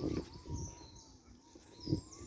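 Electric unicycle climbing a steep hill, its motor giving a faint steady whine. A few low thumps mark the start, about half a second in and just before the end, and birds chirp briefly.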